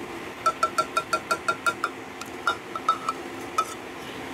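Measuring cup tapped against the rim of a glass mixing bowl to knock out thick buttermilk: a quick run of about nine ringing clinks, around six a second, then a few slower taps.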